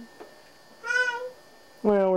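A cat meowing once: a single short call about a second in.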